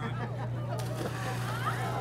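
A person jumping into cold lake water with a splash a little before the middle, over crowd voices and a steady low hum.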